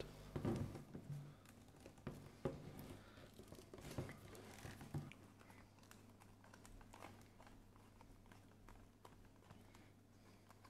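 Faint handling sounds of hands bending and pressing a damp piece of thick vegetable-tanned leather into shape: a few soft taps and rubs, over a low steady hum.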